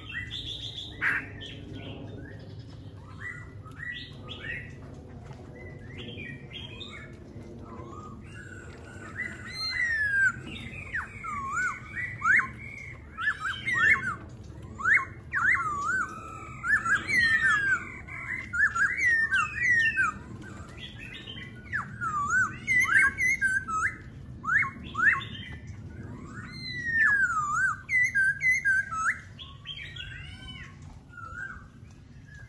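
Caged laughingthrushes singing: scattered short whistled calls at first, then from about nine seconds in a loud, nearly continuous run of varied, gliding whistled phrases that fades near the end.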